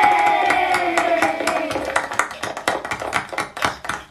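Music played back through a floor-standing loudspeaker and picked up in the room: a track's instrumental opening, with held tones that slowly sink in pitch over many sharp, irregular clicking hits.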